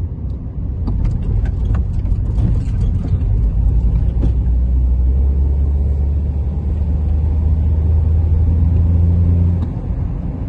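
Engine and road noise inside a moving car's cabin. It becomes a steady low drone about three and a half seconds in and drops away suddenly just before the end. A few light clicks come in the first few seconds.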